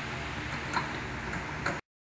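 Low, steady room noise with a couple of faint clicks, then the sound cuts off abruptly to dead silence near the end.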